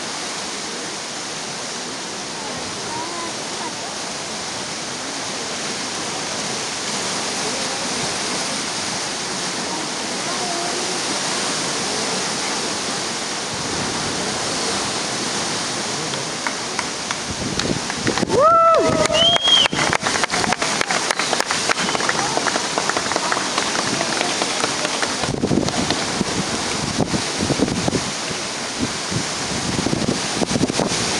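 Steady rush of ocean surf washing against the rocks below the cliff, with faint scattered voices. About halfway come two short pitched calls that rise and fall, and after them the noise is broken by rapid crackling of wind on the microphone.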